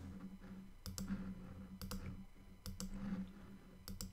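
Computer mouse buttons clicking as word tiles are picked, about once a second, mostly in quick press-and-release pairs, over a low steady hum.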